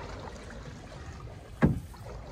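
Canoe drifting on a canal with faint water and paddle noise, and one loud knock about one and a half seconds in.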